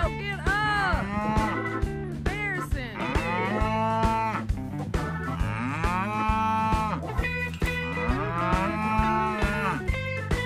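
An animal's drawn-out calls, about five of them, each rising and then falling in pitch, over background music with a steady beat.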